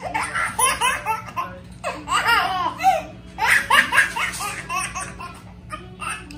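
A baby laughing hard in several runs of rapid, high-pitched giggles, loudest in the first four and a half seconds and dying down near the end.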